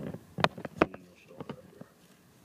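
Two sharp clicks about a third of a second apart, followed by a few fainter taps, from hands pressing the keypad and handling the housing of a handheld refrigerant identifier.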